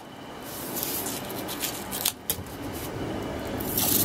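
3M blue painter's masking tape being pressed and rubbed down onto a car's painted panel by hand, with a rasp of tape pulling off the roll near the end.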